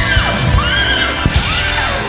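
Live rock band playing the final bars of a song, with high wailing notes that bend up and fall away several times.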